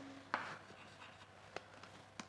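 Chalk writing on a blackboard, faint, with two short sharp chalk ticks, one about a third of a second in and one about a second and a half in.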